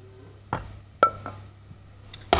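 Two sharp knocks about half a second apart, the second with a brief ring, as a stainless steel saucepan and wooden spoon knock against a ceramic plate while cooked minced beef is scraped out of the pan.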